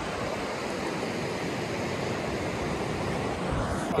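Steady wash of surf breaking on a sandy beach.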